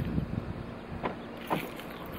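Steady low rumbling background noise with a few brief knocks.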